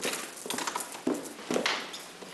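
High-heeled shoes clicking on a hard floor: four footsteps about half a second apart.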